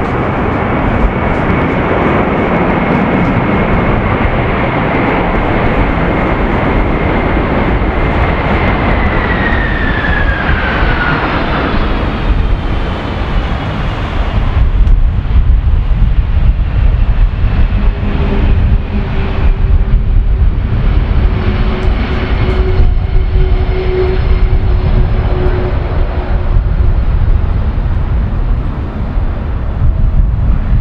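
Boeing 747-400's four General Electric CF6 turbofans in full reverse thrust on a wet runway: a loud roar with a steady high whine that falls in pitch about nine to eleven seconds in as the engines spool back down. After that the high noise thins out, leaving a heavy low rumble as the jet slows on the rollout.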